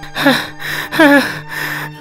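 A voiced cartoon character's breathy gasps and sighs, with a short voiced catch in two of them, over a steady background music bed.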